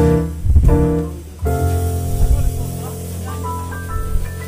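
Jazz piano trio of digital stage piano, upright bass and drum kit playing: a few short chord stabs, then a long held chord over a steady bass, with a short run of piano notes stepping upward near the end.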